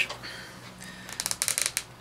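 Hard plastic parts of an action figure clicking and scraping as a back-bling accessory's hinge peg is pushed into the socket in the figure's back: a quick run of light clicks about a second in.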